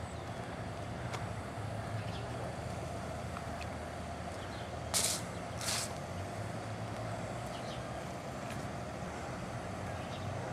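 Steady outdoor street background with a low hum, broken about halfway through by two short, sharp hisses less than a second apart.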